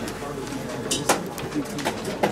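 Indistinct, low voices in the room with a few sharp clicks, starting about halfway through.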